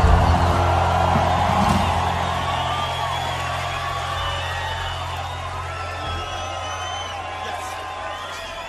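A rock band's last chord cuts off at the start, and a large festival crowd cheers, whoops and whistles, the cheering slowly dying down. A low bass tone hangs underneath, fading out over the first several seconds.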